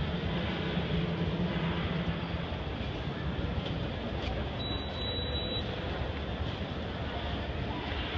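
Schindler escalator running while being ridden down, a steady mechanical hum and rumble of the moving steps. A low drone in it fades out about two and a half seconds in.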